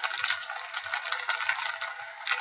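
Condom wrappers crinkling and rustling as they are handled, a dense run of small crackles.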